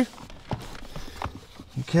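A few faint plastic knocks and clicks, spread out, as the accelerator pedal assembly is handled and fitted back onto its mount.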